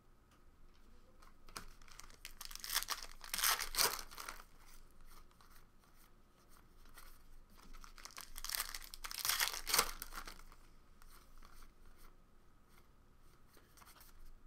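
Trading card pack wrappers torn open and crinkled by hand, in two main bouts about three and nine seconds in, with lighter crackling between.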